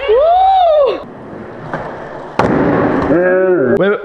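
A drawn-out yell rising and falling in pitch, then about two and a half seconds in a single sharp crack of a skateboard hitting a hard floor, with a short burst of rolling noise, followed by excited shouting.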